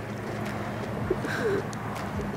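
Birds calling softly: a couple of short, low cooing notes about a second in, over faint steady background noise.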